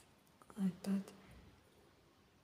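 A woman's short, softly spoken two-syllable utterance about half a second in, then quiet room tone.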